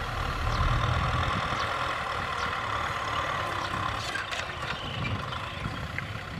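Kubota M6040SU tractor's four-cylinder diesel engine running steadily under load as it pulls a disc plough through dry soil, growing slightly fainter toward the end.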